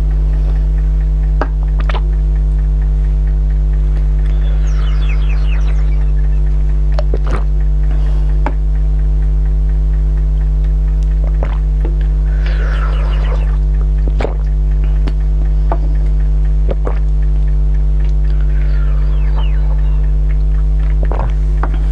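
A loud, deep, steady electrical mains hum runs throughout. Over it come scattered sharp clicks and three short spells of crackling, about 5, 12 and 19 seconds in, from handling and eating from frosty plastic bottle-shaped moulds of frozen drink.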